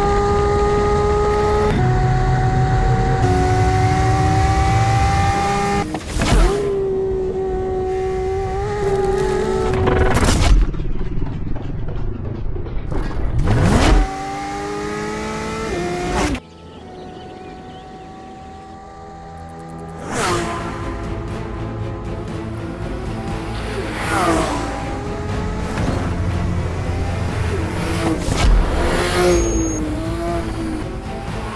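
Porsche 911 GT3's naturally aspirated 4.0-litre flat-six at high revs on a flying lap. The pitch climbs through each gear and drops back at the shifts and under braking, and the sound is broken by several abrupt edit cuts. It goes quieter for a few seconds past the middle, with a music bed underneath.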